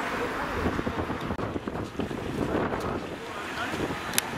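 Wind buffeting the microphone, an irregular gusty rumble over outdoor background noise.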